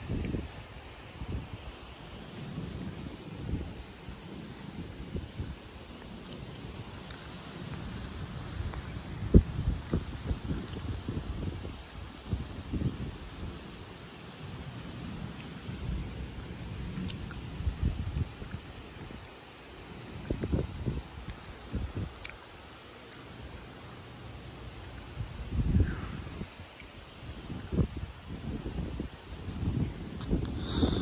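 Gusty wind buffeting the microphone in uneven surges ahead of an approaching thunderstorm, the strongest gust about nine seconds in.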